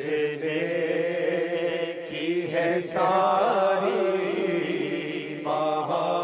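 A man reciting a naat, an Urdu devotional poem in praise of the Prophet, into a microphone, singing long drawn-out melodic phrases. A new, louder phrase begins about three seconds in and another near the end.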